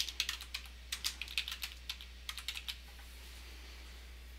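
Computer keyboard being typed on: a quick run of keystrokes that stops a little under three seconds in.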